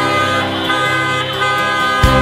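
Car horns sounding in steady tones, with music playing underneath.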